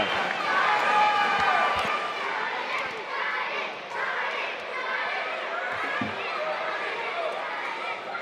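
Arena crowd cheering and chattering, many voices at once, with children's higher voices shouting most strongly in the first couple of seconds.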